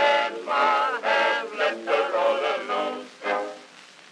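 Closing bars of an acoustic-era song recording played from an Edison Amberol cylinder. The thin, narrow-range music ends on a last short note about three and a half seconds in, after which only the cylinder's surface hiss remains.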